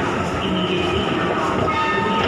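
Moving escalator running with a steady mechanical rumble amid metro station noise.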